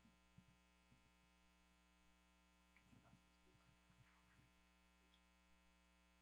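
Near silence: a steady electrical mains hum in the sound system, with a few faint knocks about three and four seconds in.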